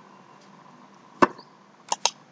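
Computer mouse clicking: two short, sharp clicks, one about a second in and another near the end.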